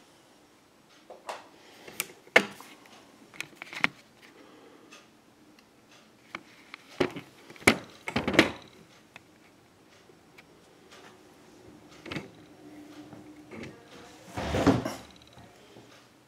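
Irregular clicks, taps and knocks of hands handling small plastic check-valve parts and the brass body of a backflow preventer, with a longer rustling scrape near the end.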